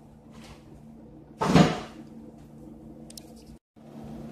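A single short, loud knock about one and a half seconds in, over a faint steady hum, with a few faint ticks after it; the sound cuts out for a moment near the end.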